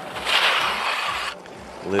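Skis sliding and scraping over the hard-packed snow of a halfpipe: a hiss lasting about a second that cuts off suddenly.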